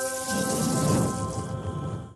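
Closing music: a held chord of steady tones, with a deep rumbling swell of noise coming in about a third of a second in, like a thunder-and-rain effect.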